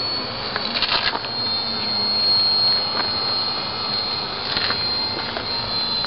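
Radio-controlled J3 Cub model airplane in flight, heard as a steady rushing drone with a thin high whine running through it. A couple of brief rustles come about a second in and again past the middle.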